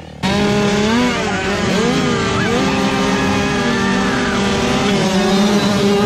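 A pack of 65cc two-stroke motocross bikes revving together, several engine pitches rising and falling over one another.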